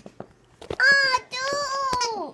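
A young girl's high-pitched, drawn-out sing-song vocalizing, starting just under a second in: a short held note, then a longer one.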